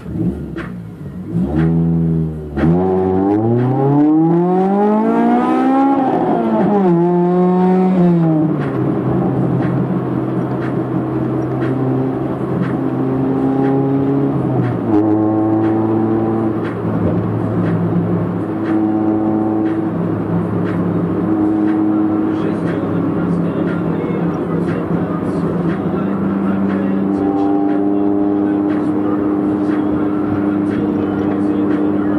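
Honda Civic EG's B18C4 VTEC inline-four, heard from inside the cabin. The revs climb steadily for about three seconds and fall away. The engine then settles to a steady drone at cruise, stepping up in pitch about halfway through.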